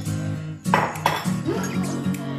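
Background music with a repeating plucked guitar line. A little under a second in, a short, loud clatter of a bowl and spoon.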